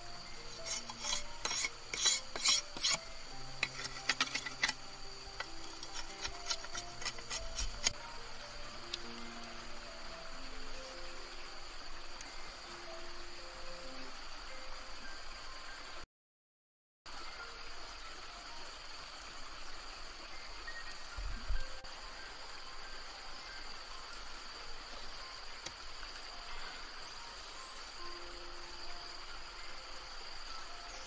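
Slow background music with sustained low notes, over a steady high insect drone. For the first eight seconds, a quick run of sharp clicks and knocks as a long green stalk is worked by hand; the music thins out after about fourteen seconds, and the sound drops out completely for a second just past halfway.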